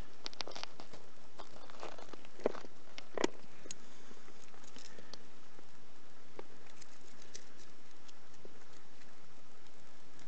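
Gloved hands digging in clay and broken rock of a quartz vein: soil crumbling and small stones clicking and knocking. The clicks are busiest over the first few seconds, with two louder knocks around two and a half and three seconds in, then grow sparser.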